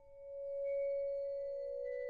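A vibraphone bar bowed with a bass bow: a single pure, sustained note swells in about half a second in and rings on steadily. The fading ring of an earlier bowed note lies beneath it.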